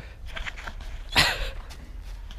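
Steady low rumble of wind and handling on a handheld action-camera microphone, with faint rustles and one short, loud burst of rustling noise just past a second in.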